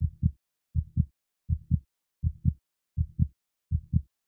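Heartbeat sound effect: a steady lub-dub of two low thumps close together, repeating about four times every three seconds.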